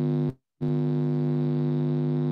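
A steady, loud electrical buzz with a stack of even overtones, like mains hum in the audio line. It cuts out abruptly for a moment about half a second in, then comes back unchanged.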